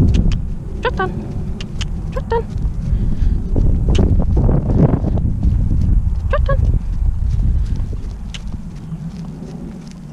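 A pony moving on a lunge circle on grass, its hoofbeats on the turf heard as scattered soft thuds, under loud low rumbling noise from the handler's head-mounted camera. A few brief voice sounds come in about a second in, around two seconds in and after six seconds.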